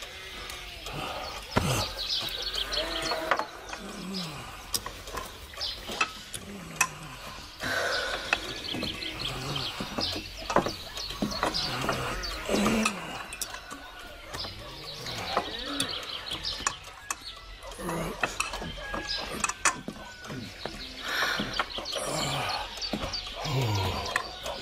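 Cups and dishes clinking and knocking on a wooden table, with many short separate clicks, under low, indistinct voices.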